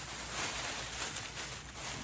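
Soft, irregular rustling and crinkling of haul items being handled, with no clear single impact.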